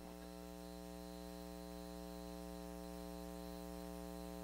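Faint, steady electrical hum on the broadcast audio feed, one buzzy tone that holds unchanged throughout.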